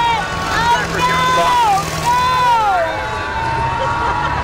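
Race school buses running on a dirt oval: a steady low engine rumble, with a run of long high-pitched tones over it that hold and then fall away.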